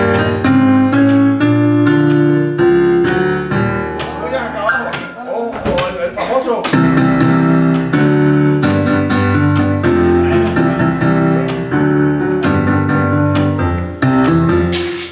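Recorded 1960s Latin boogaloo music: a piano playing a repeated rhythmic chord pattern with bass, with voices wavering briefly in the middle.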